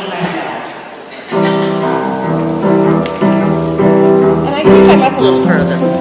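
An upright piano played in block chords, starting a little over a second in, the chords changing about twice a second.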